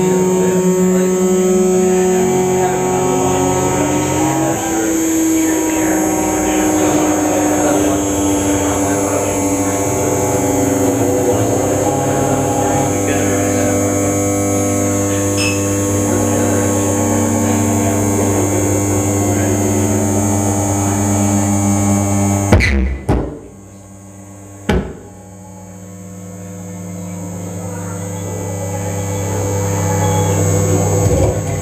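Live electronic noise performance: dense layered drones and hums, with one tone gliding upward about four seconds in. About 22 seconds in the sound cuts out abruptly with a loud click, a second click follows about two seconds later, and the drone then swells gradually back up.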